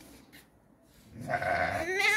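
A sheep bleating once: one long call that starts a little past halfway through and runs on to the end.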